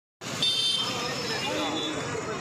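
Street ambience: steady traffic noise with people talking in the background, and a brief high-pitched tone about half a second in.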